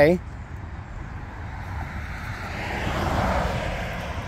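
A vehicle passing by on the road, its road noise swelling to a peak about three seconds in and then easing off, over a steady low rumble.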